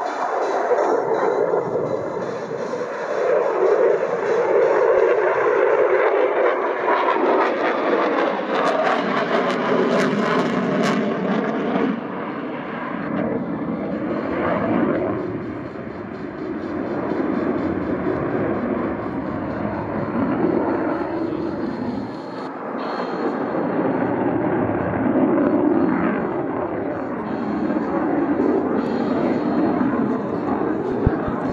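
Jet roar from an F/A-18F Super Hornet's twin General Electric F414 turbofan engines as the jet flies its display. The roar swells and fades, and pitch sweeps through it about eight to twelve seconds in.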